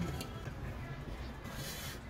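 Handling noise from an aluminium cuscuz steamer pot gripped with a cloth and turned out onto a plate: faint cloth rustle and small clicks, then a brief hissing scrape near the end.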